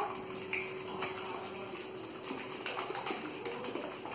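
Raw egg with herbs sloshing inside a plastic shaker cup as it is shaken by hand to mix, soft and irregular.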